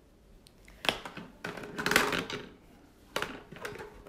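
Plastic toy guns handled and knocked about on a wooden floor: a sharp knock about a second in, a burst of clattering, then a few clicks near the end.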